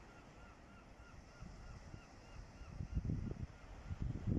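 Faint, quick series of bird calls, about four a second, that fades out about two and a half seconds in. Gusts of wind buffet the microphone near the end.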